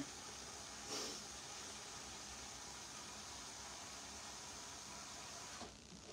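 Kitchen faucet running cold water into a stainless steel pot, a faint steady hiss that stops shortly before the end as the tap is shut off.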